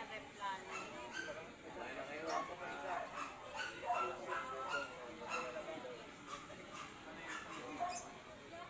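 Background chatter of people in the street, with a dog barking now and then.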